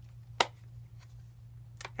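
A plastic stamp ink pad case clicks sharply once as it is handled and opened, with a fainter click near the end, over a low steady hum.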